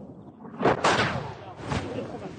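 Nearby artillery shell explosions: two sharp, loud cracks about half a second in and another about a second later, each trailing off into a rumbling echo.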